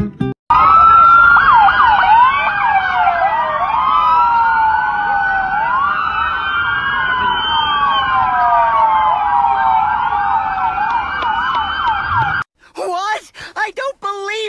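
Several police car sirens wailing at once, their rising and falling tones overlapping. They start about half a second in and cut off suddenly near the end.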